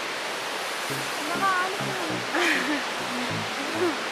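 Steady rushing of river water flowing over rocks beneath a hanging footbridge, with faint voices in the background from about a second in.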